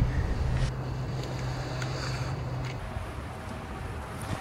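Low wind rumble on the microphone with a steady low hum that cuts off abruptly a little under three seconds in.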